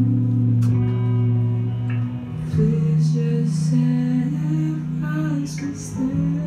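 Live band playing a slow song: electric guitar and bass with drums and cymbal strokes, and a male voice singing. The sustained bass note moves up to a higher note about two seconds in.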